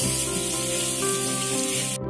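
Tap water running onto pebbles in a stainless steel sink: a steady splashing hiss that cuts off suddenly at the end, with background music under it.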